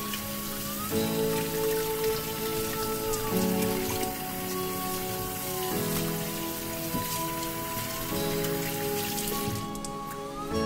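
Kitchen tap water pouring and splashing onto dried fish in a glass bowl while hands rinse it, a steady hiss that stops near the end. Background music with sustained chords plays over it.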